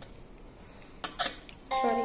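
Plastic snap connectors of an electronics kit clicking as wire leads are pressed onto the modules: two sharp clicks about a second in.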